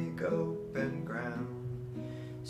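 A man singing a slow cowboy song to a nylon-string classical guitar, his voice trailing off about halfway through while the plucked guitar notes ring on.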